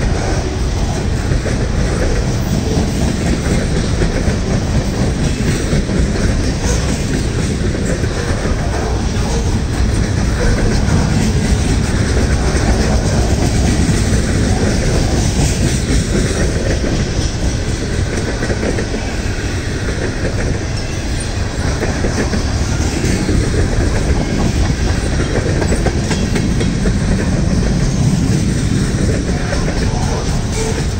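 Freight cars rolling past close by, a string of loaded centerbeam lumber cars and tank cars: a continuous loud rumble and clatter of steel wheels on the rails.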